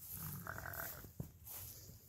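A North Country Cheviot yearling ram bleats once, briefly, followed by a single sharp knock.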